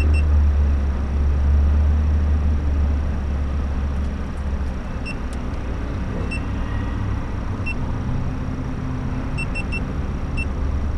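A car engine idling while stopped: a steady low rumble that eases after about three seconds. Short high electronic beeps sound every second or two, with three in quick succession near the end.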